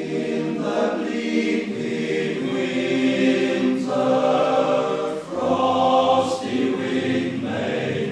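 Male choir singing a cappella in close harmony in a wood-panelled church, in several phrases with short breaths between them.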